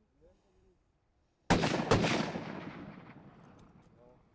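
Two hunting rifle shots in quick succession, a first shot and a backup shot about half a second apart, about a second and a half in. Each is a sharp crack, and the pair leaves a long rolling echo that fades over more than a second.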